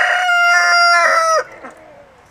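A rooster crowing: one long, loud call held at a steady pitch that drops off and ends about one and a half seconds in.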